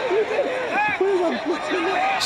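A man's voice speaking, words unclear, over steady stadium background noise.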